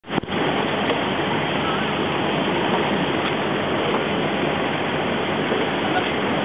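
Steady rushing noise of a moving taxi boat, its engine running under the wash of water past the hull, with a brief click right at the start.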